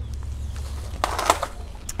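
Mulch being pulled off the top of potting soil by hand: a short rustling crunch about a second in, over a steady low rumble.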